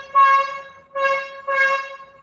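A horn honking in four short blasts in quick succession, each at the same steady pitch.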